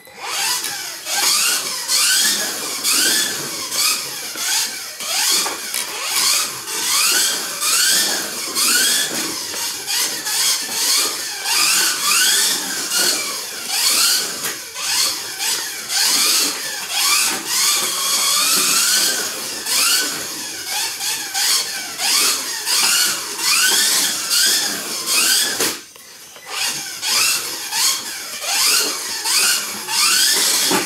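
Kyosho Mini-Z RC car's small electric motor whining in a high pitch, rising again and again as the car accelerates out of corners and dropping back as it lifts off, with a brief lull a little before the end.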